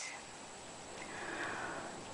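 A faint sniff or breath drawn in through the nose, swelling a little over the second half, over quiet room tone.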